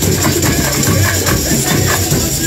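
A brass band with trumpets and percussion playing carnival music, loud and continuous, with an even, quick beat.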